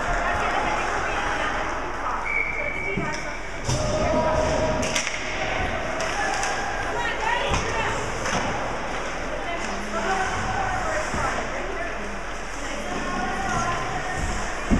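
Ice hockey rink sound: background chatter of spectators with skates and sticks on the ice, and sharp knocks of stick or puck against the boards, the clearest about four and five seconds in.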